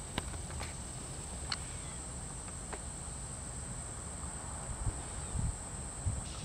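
Faint outdoor background with a steady high-pitched drone, a low rumble, and a few faint ticks.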